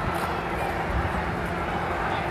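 Steady outdoor street noise with the faint voices of a crowd further off.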